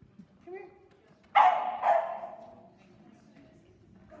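A dog barking twice in quick succession, loud, about a second and a half in.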